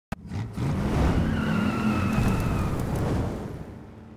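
A car engine revving, with a tire squeal about a second in that lasts roughly a second and a half. It starts with a sharp click and fades away near the end.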